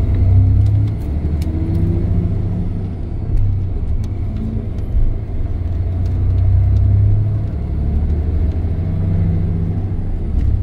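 Bus engine and road rumble heard from inside the cabin, a steady deep drone, with the engine pitch rising in the first couple of seconds as the bus picks up speed.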